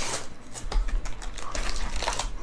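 Trading-card packs in crinkly wrappers rustling and crackling against each other and the cardboard box as gloved hands pull them out, a quick irregular run of small crackles.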